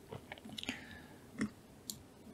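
A handful of faint computer mouse clicks and soft mouth noises close to a desk microphone, the loudest about one and a half seconds in.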